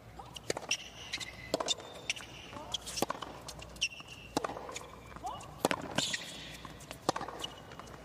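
Tennis rally on a hard court: the ball struck back and forth with rackets in a string of sharp pops, with short squeaks of tennis shoes between shots.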